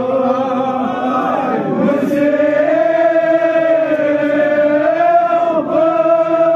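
A man's voice chanting a Kashmiri marsiya (Muharram elegy) through a microphone, in long drawn-out held notes; the pitch shifts about a second and a half in, then settles on one long sustained note.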